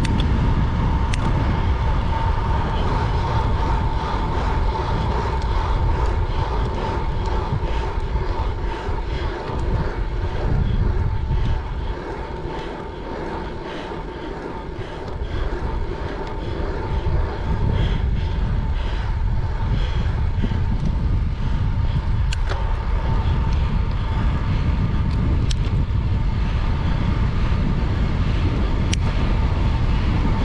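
Wind rushing over an action camera's microphone on a bicycle ridden at about 30 mph, with a steady high whine running through it. The rush drops away for a few seconds near the middle as the bike slows to about 17 mph on a hard effort, then builds again, with a few light clicks near the end.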